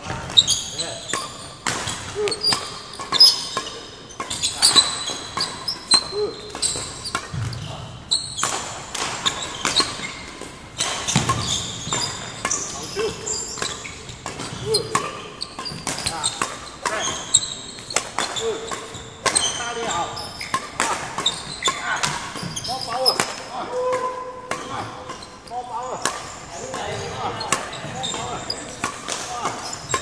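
Badminton rackets striking shuttlecocks in a fast tapping drill, sharp hits coming one or two a second throughout, echoing in a large hall, with sports shoes squeaking on the wooden court floor between hits.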